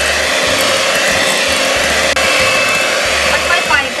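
Electric hand mixer running steadily, its twin beaters whisking a thick butter-and-condensed-milk cream batter in a glass bowl.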